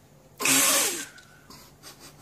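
A single sneeze-like burst of breath, loud and about half a second long.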